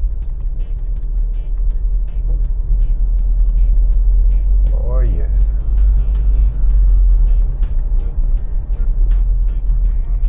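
Steady low rumble of a car driving slowly along a busy street, heard from inside the car, with faint background street sounds. A short call falling in pitch cuts through about five seconds in.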